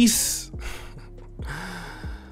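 A man's sharp, audible out-breath like a sigh, a second shorter breath, then a brief low hum near the end.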